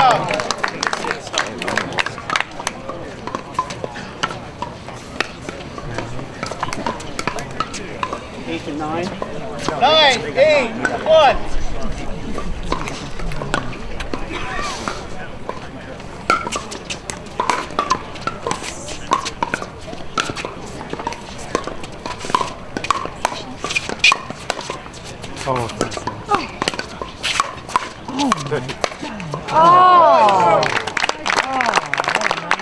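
Background chatter of spectators and players with scattered sharp clicks, typical of pickleball paddles striking hollow plastic balls and balls bouncing on the hard court. A single voice speaks more clearly about ten seconds in.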